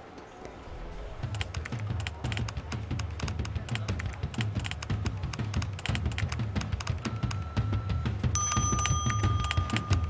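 Fast typing on a computer keyboard: a dense, steady run of key clicks over background music with a low pulse. Two held high tones sound near the end.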